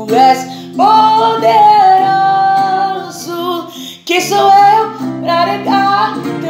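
Music: a singer holds one long, high, wordless note for about three seconds, then starts a new phrase, over acoustic guitar.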